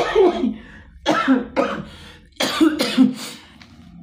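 A man coughing into a tissue held over his nose and mouth, in about five separate bursts.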